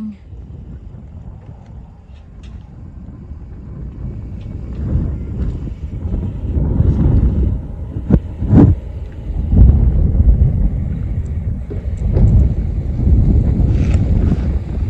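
Wind buffeting the phone's microphone in uneven gusts, a low rumble that grows stronger about four seconds in, with a couple of brief knocks a little past the middle.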